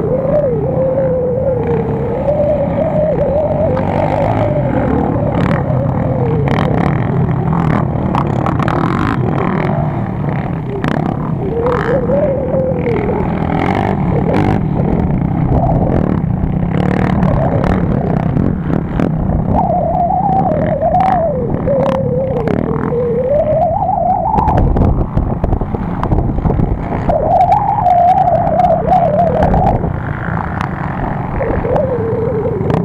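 Quad bike (ATV) engines on a dirt track revving up and down as the riders pass and take the jumps, the engine pitch rising and falling repeatedly, over a steady low rumble with scattered sharp clicks.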